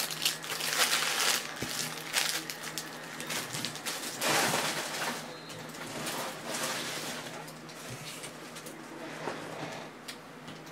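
Plastic card sleeves and hard-plastic card holders rustling and clicking as sleeved trading cards are handled on a tabletop, loudest in the first second and again around the middle, over a faint steady low hum.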